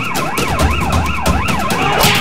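Police car siren in a fast yelp, its pitch sweeping up and down about four times a second, with a low rumble underneath.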